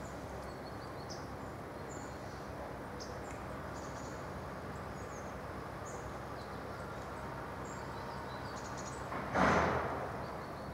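Outdoor ambience: a steady background hiss with scattered faint, high, short chirps from small birds. A short, louder rush of noise comes about nine seconds in.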